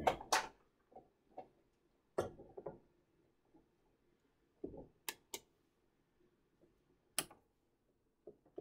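Scattered sharp clicks and knocks of hands handling small fans and the switches on a wooden battery-powered outlet box, with near silence between them.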